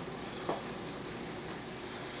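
Quiet, steady background hiss of room tone, with one faint click about half a second in.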